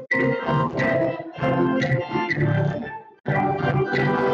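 Church organ music, played in phrases with brief pauses, one about three seconds in.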